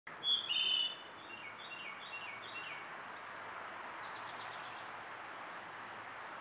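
Songbirds singing: a loud, clear phrase in the first second, then quieter runs of short descending notes from other birds, over a steady background hiss.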